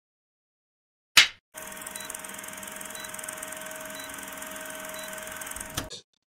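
A clapperboard snapping shut about a second in, a single sharp clap. It is followed by a steady hiss with a faint hum and a light tick about once a second, which cuts off just before the end.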